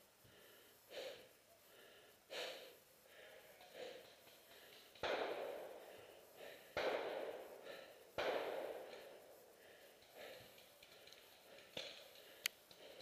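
A person breathing hard close to the microphone, with softer breaths early on and three loud, sudden exhales in the middle.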